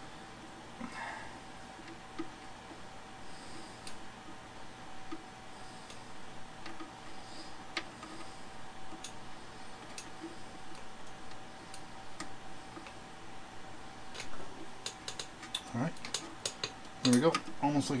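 Scattered light clicks and taps as small rubber grommets are pressed by hand into holes in a vintage Vespa's steel body panel, over a faint steady hum.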